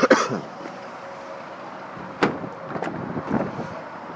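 Car door handling on a 2012 Mazda 6 sedan: a sharp knock right at the start and another about two seconds in, followed by a few lighter clicks.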